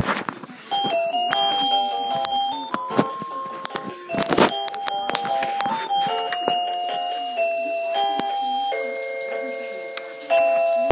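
Toy electronic keyboard (a Playtime Keyboard) sounding a simple beeping melody, one plain electronic note after another with steps in pitch every fraction of a second. Light clicks throughout and a brief rustle about four seconds in.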